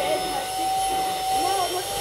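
Canister vacuum cleaner running steadily with a constant high whine, its hose nozzle held against a padded fabric headboard.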